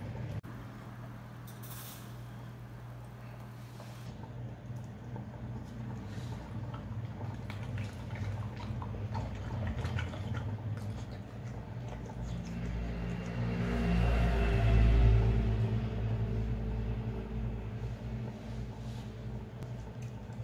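Dog licking and chewing softly, with a few small wet clicks, over a steady low hum. About two-thirds of the way through, a low rumble swells up and fades away again.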